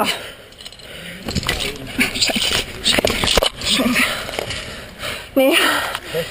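A struggling climber's strained breathing and effortful voice sounds, with a few sharp clicks in the first half.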